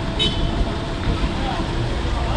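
A water tanker truck's engine running steadily at a standstill, with people's voices in the background. A brief high-pitched squeak sounds about a quarter second in.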